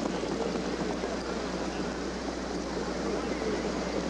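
Steady, even racecourse noise during a harness race, with crowd and track sounds blended into a hiss-like wash. A constant low hum lies underneath.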